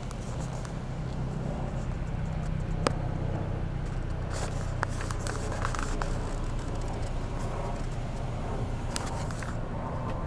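Car engine running with a steady low hum, heard from inside the vehicle, with a few sharp clicks over it.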